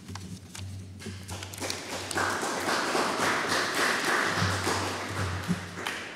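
Audience applauding after a lecture, with many close claps that swell about two seconds in and die away near the end.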